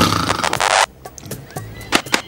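A loud whinny that lasts under a second and cuts off abruptly. A few faint clicks follow.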